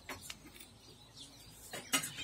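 Quiet spell with a few faint clinks and taps of cutlery and plates, and a sharper click near the end.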